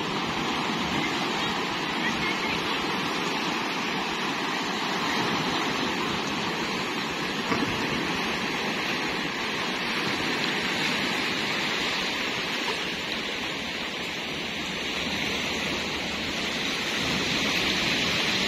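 Sea surf breaking and washing over rocks at the shoreline: a steady, even rush of waves.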